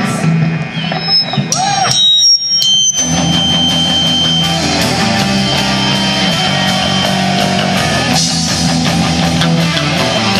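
Live rock band, electric guitars through amplifiers with drums, starting a song. A loose guitar intro with a few high ringing tones runs for about three seconds, then the full band comes in loud and steady.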